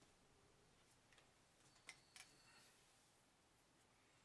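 Near silence: room tone, with a few faint clicks, the clearest two close together about two seconds in.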